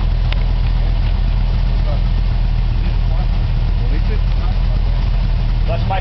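Off-road desert race car's engine idling, a steady low rumble.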